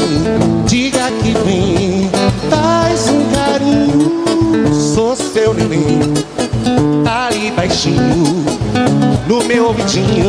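Live acoustic band music: a man singing into a microphone over strummed acoustic guitar and hand percussion.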